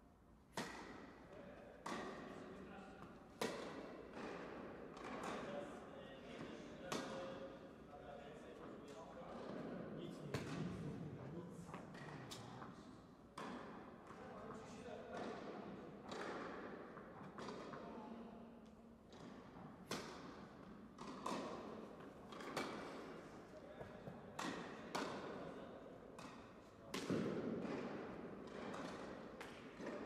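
Tennis ball struck by rackets and bouncing on an indoor court: a string of sharp hits and bounces every second or two, echoing in the hall.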